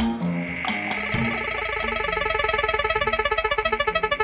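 Electronic spin-the-wheel sound effect as an on-screen roulette wheel spins: a fast, even run of short pitched ticks, about ten a second, that starts about a second and a half in after a few brief musical notes.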